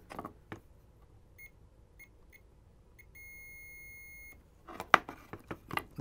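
Capacitor Wizard in-circuit ESR meter beeping: four short chirps as the probes meet a capacitor's leads, then one steady tone of just over a second that cuts off suddenly. The beep is the meter's sign that the capacitor's ESR reads in the good range. A few light clicks follow near the end.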